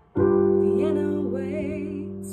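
A piano chord struck just after a brief silence and left to ring, slowly fading, with a woman's held sung note wavering in vibrato over it.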